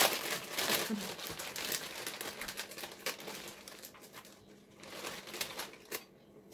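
Plastic Shin Ramyun instant noodle packet being torn open and crinkled in the hands as the noodle block is pulled out: a sharp tear at the start, then a run of crackling wrapper that thins out toward the end.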